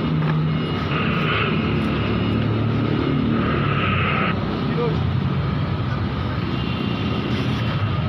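A crane's engine running steadily close by as a loud, even mechanical noise with a low hum. It turns harsher and brighter twice, briefly about a second in and again for about a second from three and a half seconds in.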